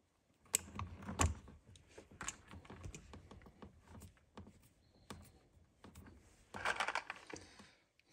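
Crimping pliers clicking sharply on a butt connector on a fine speaker wire, followed by faint ticks and rustling of small wires and plastic connectors being handled, with a denser rustle near the end.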